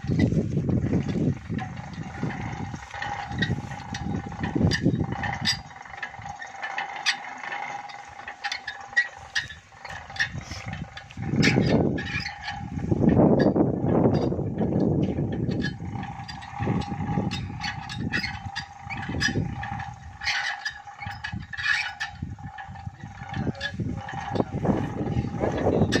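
Borewell pump lifting machine running, its electric motor and gearing giving a steady whine as the pump's pipe is hauled up out of the borewell, with scattered metallic clicks and knocks.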